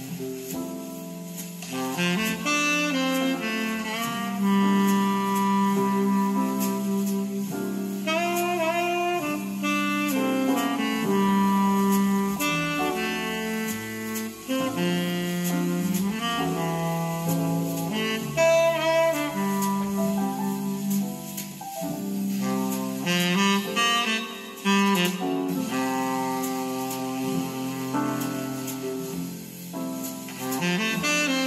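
Jazz recording led by a saxophone, with a walking bass line beneath it, played back through Altec horn loudspeakers.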